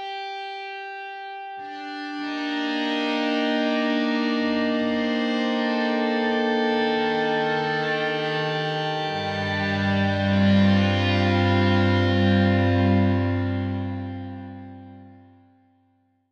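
Sampled electric-guitar feedback tones with heavier distortion from Spitfire Audio's Ambient Guitars Evo grid, played as held notes from a keyboard. Sustained notes are layered one after another into a swelling chord, with low notes coming in about four and nine seconds in, then fading away near the end.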